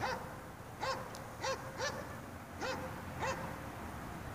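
An animal calling: about six short calls, each rising and falling in pitch, at uneven gaps of a third to three quarters of a second.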